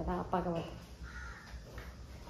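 A woman says a short word, then a faint, drawn-out bird call sounds about a second in.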